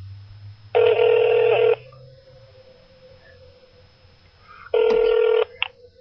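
Telephone ringing tone heard down the line while a call is put through to another extension. There are two rings about four seconds apart, and the second is shorter.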